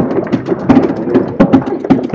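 Applause from the assembly chamber: a sudden burst of rapid, irregular clapping and knocking, greeting visitors as they are introduced.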